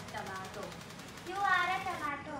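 A girl's voice: a brief utterance, then about halfway through a longer, wavering, high-pitched vocal sound.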